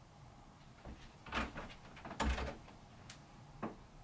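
A door being opened, heard as a series of soft knocks and clicks over about three seconds, the loudest near the middle.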